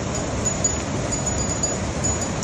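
Steady rushing outdoor noise, with brief thin high tinkling tones now and then.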